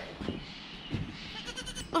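A goat kid bleating twice, with a few light clicks near the end.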